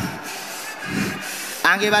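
Soft rubbing, rustling noise for about a second and a half, then a man starts speaking loudly near the end.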